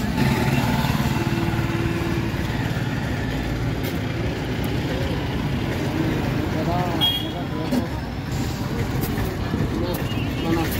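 A motor vehicle engine running at idle, a steady low rumble, with indistinct voices in the background.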